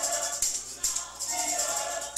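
Small vocal ensemble singing, with a hand-held tambourine shaken in a steady beat of about two strokes a second.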